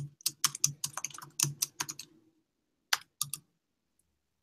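Typing on a computer keyboard: a quick run of keystrokes for about two seconds, then a few more keystrokes a second later.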